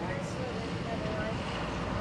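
Steady low engine hum of a vehicle, with faint voices in the background.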